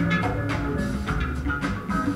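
Music from a vinyl record on a turntable: live jazz organ record with drums and bass, playing continuously.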